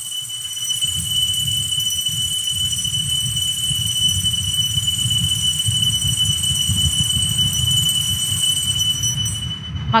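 A steady high-pitched squealing tone, held level for nearly ten seconds and then cut off abruptly, over a low fluctuating rumble.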